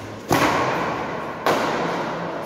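Badminton racquets striking a shuttlecock in a rally, two sharp hits a little over a second apart, each ringing on in a large echoing hall.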